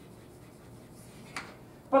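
Chalk writing on a blackboard: faint scraping strokes, with one short sharp tap about a second and a half in.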